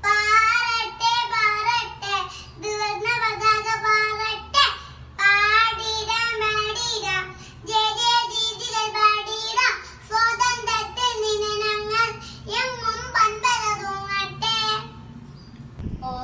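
A young girl singing solo, holding notes in short phrases with brief pauses between them.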